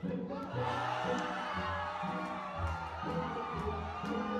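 Shouting and cheering voices break out about half a second in, over background music with a steady bass line.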